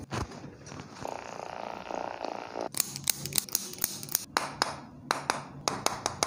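A series of sharp, irregular taps, several a second, from a mallet striking a wooden-handled chiropractic adjusting tool held against the lower back. They are preceded by about a second and a half of low buzzing.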